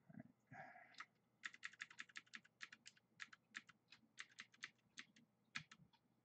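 Computer keyboard keys tapped in a quick run of faint clicks, starting a little over a second in and thinning out to a few single clicks near the end.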